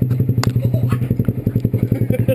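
Honda Grom's single-cylinder engine idling with an even, rapid putter of about a dozen beats a second. A single sharp click comes about half a second in.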